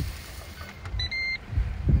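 Ninja Woodfire electric grill's lid being shut, then the grill's control panel sounding a short beep followed by a slightly longer one about a second in, over wind rumble on the microphone.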